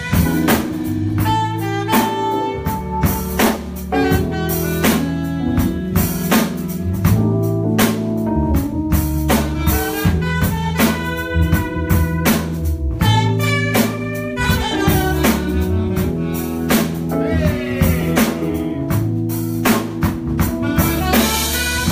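Live band playing an instrumental blues-jazz groove: a saxophone lead over electric guitar, keyboard and a steady drum-kit beat.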